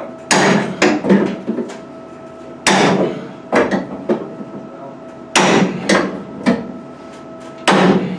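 Hard metal knocks and clanks as steel tools are worked against the aircraft's metal structure to bring the wing box and fuselage bolt holes into line: four heavy strikes about two and a half seconds apart, each followed by a few lighter knocks.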